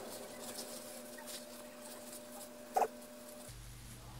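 Faint rustling and crinkling of toilet paper being wrapped around a head, over a faint steady hum. A brief squeak sounds a little before the end.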